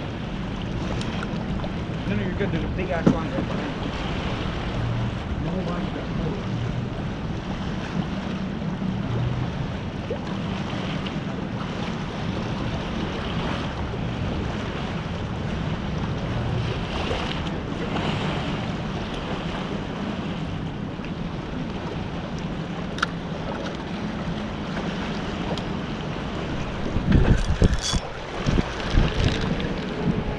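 Steady wind buffeting an action camera's microphone over the wash of ocean waves, with louder buffeting near the end.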